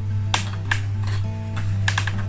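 Background music with a steady low bass and held notes, with a few short light clicks.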